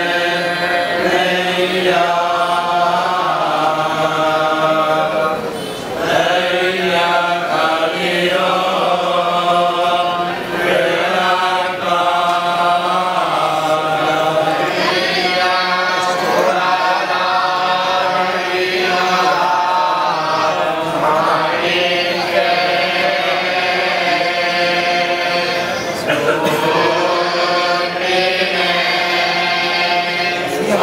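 A group of men chanting a devotional recitation in unison, continuous with brief breaks between verses, over a steady low hum.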